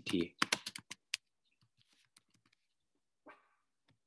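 A quick run of about seven key clicks on a computer keyboard, typing within the first second or so.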